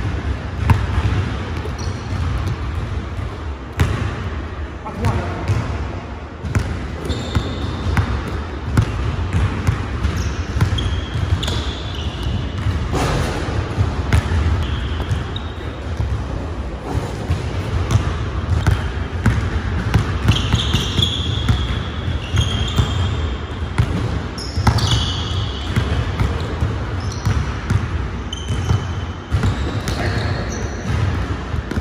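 Basketball being dribbled and bounced on a hardwood gym floor, with sharp repeated strikes and brief high-pitched sneaker squeaks as players cut and stop.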